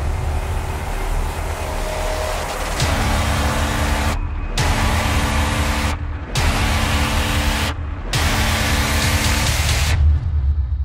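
Cinematic logo-intro soundtrack: a deep rumble under a loud rushing wash, with held low notes coming in about three seconds in. The rushing drops out briefly three times, roughly every two seconds.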